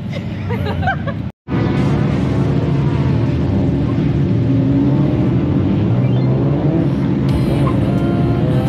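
Engines of a queue of drift cars running on the track's grid, a steady dense engine sound. It follows a brief total dropout about a second and a half in.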